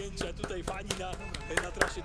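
A small group of people clapping in quick, irregular claps, with voices and background music underneath.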